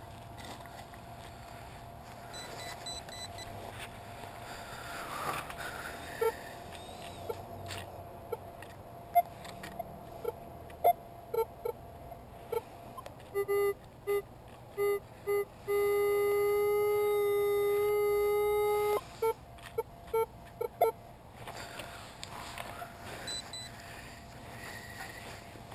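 Metal detector beeping on a buried metal target: a run of short beeps, then one steady tone held for about three seconds, then a few more short beeps. Before the beeps, soft scraping of a digging knife in rubber mulch.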